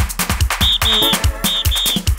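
Electronic dance music with a fast, steady kick-drum beat and a high whistle-like lead repeating a short-then-long two-note figure.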